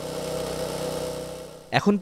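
Small petrol engine of a walk-behind concrete power trowel running steadily at one even pitch.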